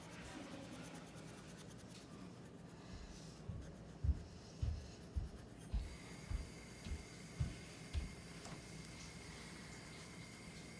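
Wooden pencil drawing on lined paper, with a run of about eight soft, low thumps in the middle, each a stroke or a tap of the hand against the table.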